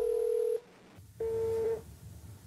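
Mobile phone call tones during an outgoing call: a steady beep that stops about half a second in, then after a short silence a second, shorter beep of the same pitch.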